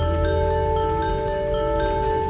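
Instrumental interlude music: a repeating pattern of short, bright notes over steady held tones and a low bass line.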